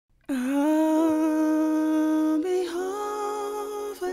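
Opening of an R&B song: a single voice holding a long, steady vocal note with little or no backing, stepping up to a higher note about two and a half seconds in.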